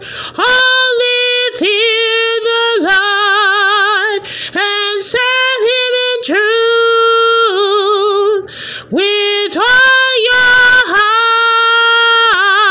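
A woman singing solo and unaccompanied, holding long notes with a wavering vibrato, in phrases separated by short breaths.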